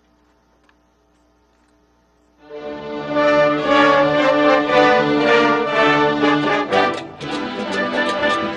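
A huge massed orchestra of about twelve thousand musicians comes in together about two and a half seconds in, playing loud sustained chords. Just before the end it breaks off briefly and then moves into short, rhythmic accented strikes.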